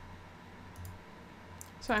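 A few faint computer mouse clicks over a steady low hum and hiss.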